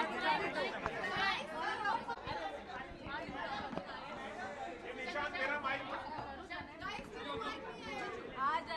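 Overlapping chatter of a crowd of people talking at once, with no single clear voice.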